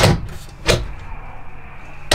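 A fifth-wheel trailer's bedroom closet door worked by hand at its handle: two sharp knocks, one at once and a second under a second later.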